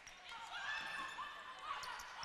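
Athletic shoes squeaking on a hardwood gym floor as players move during a volleyball rally, in short wavering squeals, with a faint sharp tick near the end.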